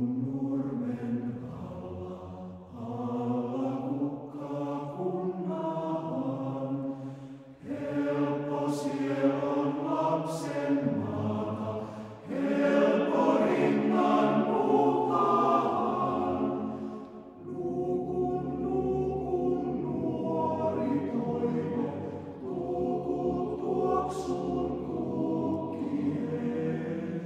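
Male-voice choir singing unaccompanied in Finnish, in slow sustained phrases with short breaks between them. The fullest, loudest phrase swells about midway.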